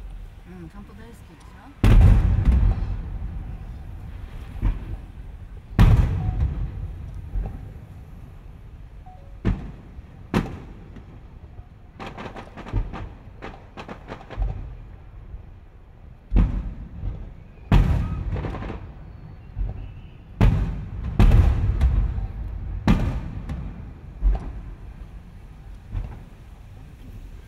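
Aerial fireworks shells bursting overhead: about ten sharp booms, each followed by a rolling low rumble, some coming in quick pairs and clusters, with a faster run of smaller pops around the middle.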